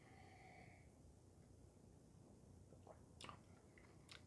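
Near silence, with a faint sip of beer from a glass in the first second and a few soft mouth clicks as the beer is tasted about three seconds in.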